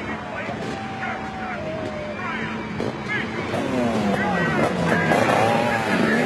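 A pack of motorcycle engines revving off the start line together, many overlapping engine notes rising and falling and growing louder about three and a half seconds in.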